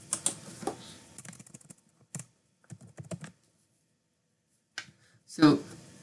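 Computer keyboard keystrokes as a word is deleted and a short word typed in its place: irregular clicks, a quiet pause, then a few more taps.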